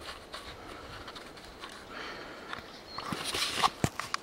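A man breathing hard in noisy puffs, with rubbing and rustling against the camera microphone as he handles a freshly caught snake; a few sharp clicks near the end.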